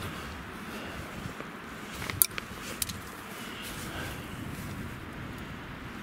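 Steady rushing of wind through the forest, with a few sharp clicks about two seconds in and another a little later.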